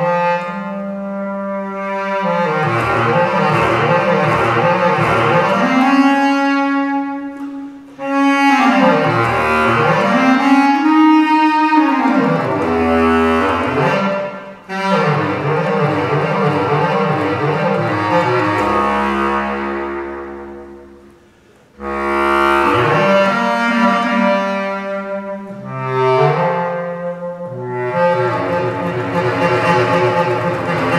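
Solo bass clarinet playing fast runs with wide leaps up and down, in a free jazz improvisation. The runs come in phrases split by short breaths, and a long low note leads into a brief pause a little past two-thirds of the way through.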